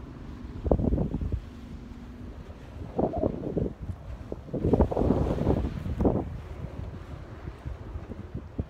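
Strong wind buffeting the microphone in gusts. There are short bursts about a second and three seconds in, and the longest, loudest gust runs from about four and a half to six seconds.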